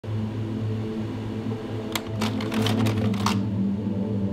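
A low steady drone, with a quick run of about ten typewriter key strikes about halfway through.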